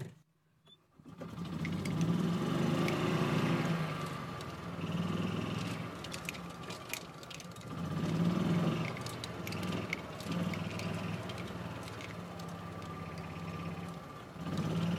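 Golf cart driving over grass: its drive noise comes in about a second in as a steady low hum that swells and eases every few seconds, with a few short clicks and rattles.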